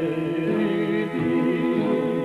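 Solo man's voice singing a Macedonian folk song unaccompanied into a microphone, the melody bending between held notes.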